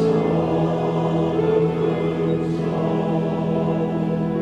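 Men's choir singing a slow Christmas hymn in long, held chords, with a steady low note underneath.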